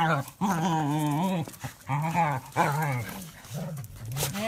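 A small dog's drawn-out vocal calls during play, five in a row with short gaps, wavering in pitch, the longest about a second.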